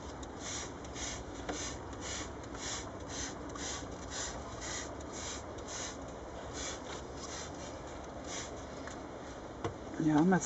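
Hand trigger spray bottle pumped about twenty times in quick succession, roughly three short hissing sprays a second with a brief pause past the middle. It is misting lactic acid onto the bees on a brood-free comb as a varroa mite treatment.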